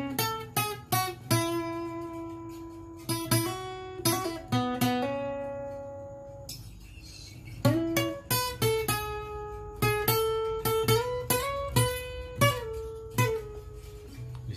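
Yamaha APX 500 II acoustic guitar, capoed, playing a single-note lead melody: a string of picked notes that ring and fade, with one long held note about halfway through and quicker notes in the second half.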